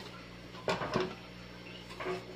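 Telescoping light stand being handled and extended: a few short clicks and knocks from its clamps and sliding tubes, the loudest about two-thirds of a second and a second in, with a steady low hum underneath.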